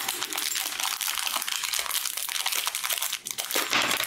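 Thin plastic packaging bag crinkling and rustling continuously as hands unwrap a small metal microscope-stand part from it.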